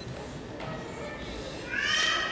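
A short, high-pitched cry or squeal rises near the end over a low murmur of room noise.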